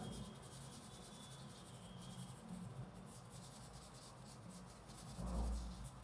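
Coloured pencil scratching faintly on paper as a drawing is shaded and outlined. A dull low thump sounds about five seconds in, over a steady low hum.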